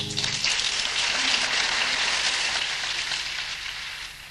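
Audience applauding at the end of a live song, after the last guitar chord dies away in the first half second; the clapping thins out near the end.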